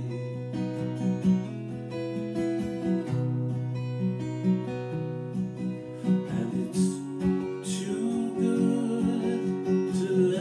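Steel-string acoustic guitar strummed and picked through slow chords, with a man singing over it.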